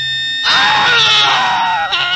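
A held music chord, then a loud human scream that starts about half a second in, wavers in pitch and lasts over a second.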